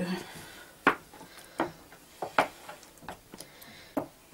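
A spoon knocking against the bowl of ground tomatoes, about six sharp, irregular clicks and taps, the loudest about a second in.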